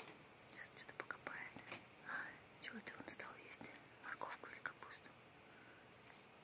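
Hamster chewing fresh grass: quiet, scattered small crunching clicks and rustles, with faint whisper-like noise.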